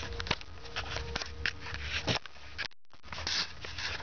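Handling noise from the recording device being positioned by hand: scattered clicks, taps and rubbing close to the microphone. The sound cuts out completely for a moment about three quarters of the way through.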